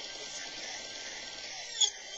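Music playing in a small room, thin with little bass, with one loud beat near the end.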